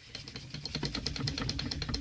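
Dry pad rubbed briskly over a freshly sealed gel nail, squeaking in a rapid run of short strokes. The squeak is the sign that the sealed gel is polishing up to a shine.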